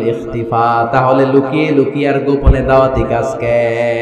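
A man's voice preaching into a microphone in a chanting, sing-song cadence, with drawn-out held notes between shorter spoken phrases.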